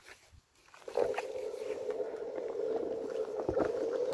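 A Onewheel's electric hub motor starting about a second in and then running with a steady whine as the board rides over a dirt trail, with small clicks and knocks from the tyre and board.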